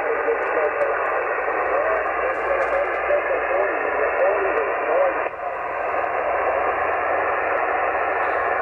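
Single-sideband voice of a distant station coming through an HF transceiver's speaker, weak and buried in steady band hiss, as the signal fades down.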